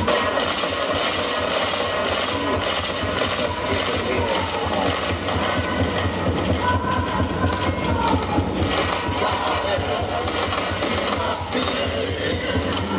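Live electronic noise music played from laptops and a small MIDI keyboard: a dense, steady wall of distorted noise over a low throb. A wavering tone rises out of it about halfway through.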